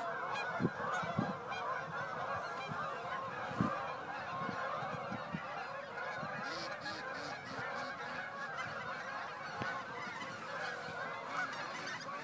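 A large flock of geese flying overhead, hundreds of birds honking at once in a dense, steady chorus.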